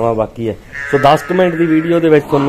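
A calf bawling in several calls in a row, one of them higher and more strained about a second in.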